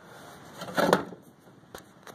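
Hand tools being shifted about in a plastic tub: one short clatter a little under a second in, then a few light clicks.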